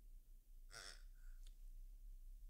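Near silence, broken by a faint short exhale, like a sigh, just under a second in.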